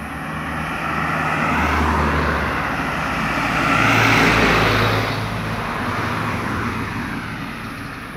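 Cars driving past close by on a paved road: engine and tyre noise swelling to its loudest about four seconds in, then easing as a second car goes by.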